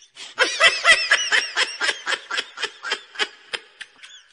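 A person laughing hard in a long run of quick, high-pitched bursts, about five a second, fading toward the end.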